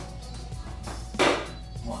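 Background music, with one short, sharp smack about a second in: a thrown playing card striking and sticking in a foam board.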